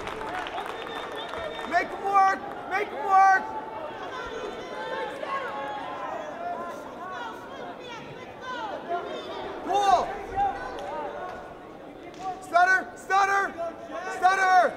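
Crowd murmur in a wrestling arena, with men shouting short loud calls: a few about two to three seconds in, one at about ten seconds, and several in a quick run near the end.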